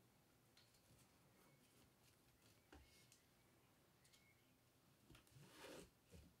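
Near silence, with a few faint ticks and a soft rustle near the end: sidewall string being worked through a lacrosse head's mesh and plastic sidewall.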